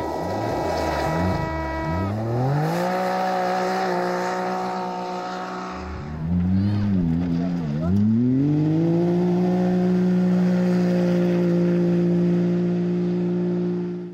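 Can-Am side-by-side (SSV) buggy engines accelerating hard. The pitch climbs about two seconds in, sags and wavers around the middle, then climbs again and holds at high revs.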